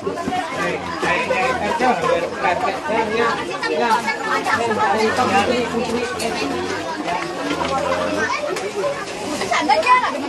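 A crowd of people talking at once: many overlapping voices in a continuous chatter, with a faint steady low hum underneath.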